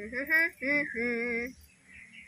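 A high-pitched voice calling out three drawn-out sounds with wavering pitch in the first second and a half, with no clear words.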